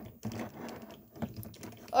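Hands moving and posing a plastic Godzilla action figure: small irregular clicks and rubbing from its jointed limbs and body.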